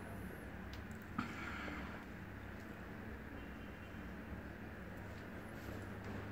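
Quiet room tone: a low steady hum and faint hiss, with a single short click about a second in.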